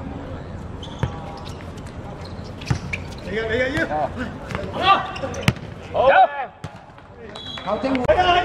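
A football being kicked between players: a few sharp thuds of boot on ball, about a second in, near three seconds and about five and a half seconds in. Players shout in between, loudest just after six seconds.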